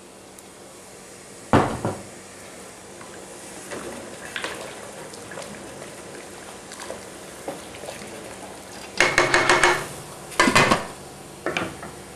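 Metal stockpot and lid clattering: a sharp knock about one and a half seconds in, a few light taps while the water is stirred with a wooden spoon, then a quick rattling clatter with a ringing tone near the end as the lid goes onto the pot. A faint steady hiss lies underneath.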